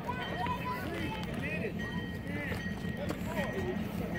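Voices of several people talking and calling at a distance, with no one close to the microphone, over a steady low hum and a faint steady high tone.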